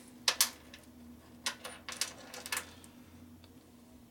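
Small parts clicking as they are handled: a black skateboard wheel and steel ball bearings knocking together and against a metal workbench, two sharp clicks about a third of a second in and a few lighter ones around the middle. A faint steady hum runs underneath.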